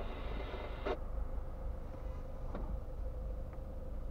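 Low steady rumble of a car idling while stationary, heard inside its cabin, with a faint steady hum and a sharp click about a second in.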